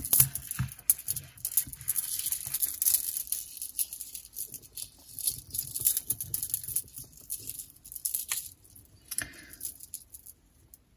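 Strands of faceted terahertz-stone beads clicking and rattling against each other as they are handled and untangled, in many quick irregular clicks that thin out toward the end.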